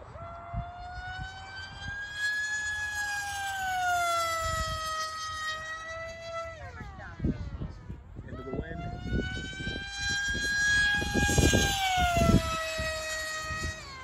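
FMS Flash 850mm pusher-prop RC jet in flight: its brushless electric motor and propeller give a high, siren-like whine that swells and sags in pitch with throttle. About halfway through the throttle is cut and the whine slides down in pitch and fades. Just over a second later it comes back up for another run.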